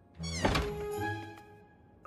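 A short cartoon sound effect: a quick falling glide with a thunk about half a second in, over soft background music with held tones that fade away.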